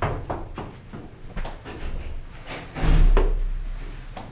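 Quick footsteps going down concrete stairs, then about three seconds in a loud, deep slam with a low rumble that fades over about a second.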